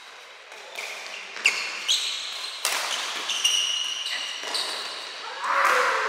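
Badminton being played on an indoor court: several sharp racket strikes on a shuttlecock in quick succession, mixed with short high squeaks of court shoes on the floor, with a louder noisy swell near the end.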